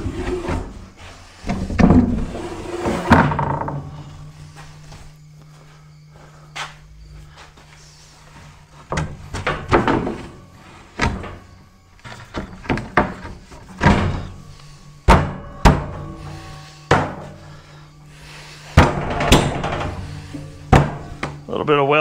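A plywood sheet being slid in and knocked into place on the bottom shelf of a steel rack: wood scraping for the first few seconds, then a string of thunks and knocks, over steady background music.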